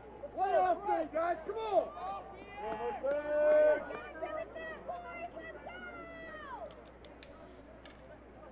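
Several distant voices shouting and calling out over one another on a soccer pitch while a corner kick is set up. The calls die away about seven seconds in.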